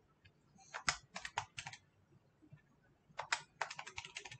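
Faint key taps on a computer keyboard, a quick burst of about five clicks about a second in and another run of clicks near the end.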